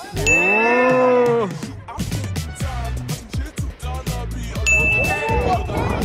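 A bright, held ding sound effect about a third of a second in, with a pitched tone under it that rises and then falls. The same effect comes again at about four and a half seconds, over background music with a steady beat.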